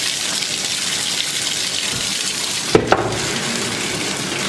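Bathtub faucet running steadily into the tub, with two sharp knocks close together about three-quarters of the way through.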